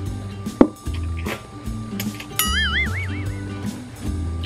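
Background music with a steady beat. A short, loud noodle slurp comes about half a second in, and a wavering, warbling tone is heard in the second half.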